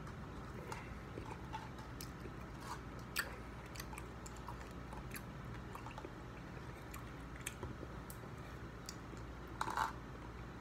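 Plastic spoon clicking and scraping in a plastic cup of soft dessert, mixed with close mouth sounds of eating, in scattered small clicks with a sharper one about three seconds in and a brief louder rustle near the end.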